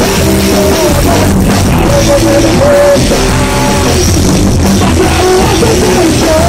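Live rock band playing loudly at rehearsal: drum kit with cymbals and electric guitars.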